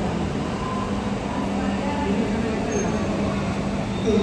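Jet engines of a taxiing airliner running steadily at low power: an even roar with a constant low hum underneath.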